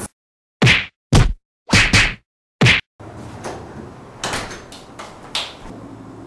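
Five quick whacking hits in about two seconds, each one separated by dead silence, as edited-in comedy hit sound effects. After them comes low room noise with a few faint knocks.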